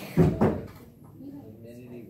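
Two loud, dull thumps in quick succession near the start, then faint voices talking.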